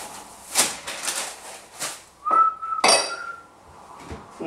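Kitchen handling sounds: wrapping rustles and dishes or cutlery clatter in short strokes, then a sharp ringing clink. A short, steady high tone sounds just before the clink.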